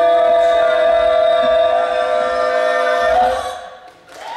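Several unaccompanied voices hold one long sung chord together, which fades away near the end.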